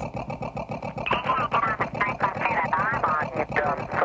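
A dense, fast stream of chopped-up voice fragments from a tape-collage sound track, speech-like but with no clear words.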